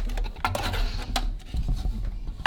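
Stainless steel bento lunch boxes being handled on a wooden table as they are opened and shifted: two sharp metal clicks about half a second and a second in, with scraping and rustling between them.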